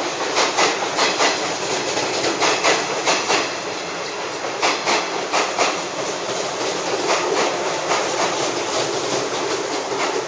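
JR 113 series electric multiple unit running in past the platform, its wheels clacking over the rail joints in quick pairs of beats as each bogie passes, slowing as it arrives.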